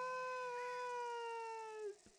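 One long, drawn-out wail or howl at a steady pitch, voice-like, cutting off just before the end.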